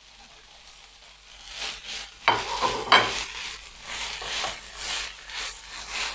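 Beef strips, onions and diced green bell pepper sizzling in a non-stick frying pan while being stirred with a silicone spatula. A faint steady sizzle at first gives way, about a second and a half in, to repeated scraping stir strokes about every half second. The loudest strokes come about two and a half and three seconds in.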